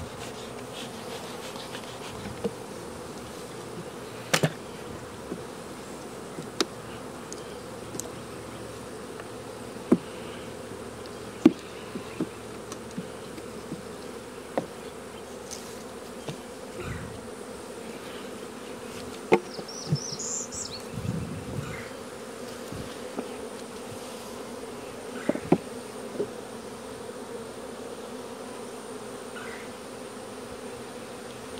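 Honey bees buzzing around an opened hive, a steady hum throughout. Sharp knocks and clicks come every few seconds from the wooden hive boxes and frames being handled with a hive tool.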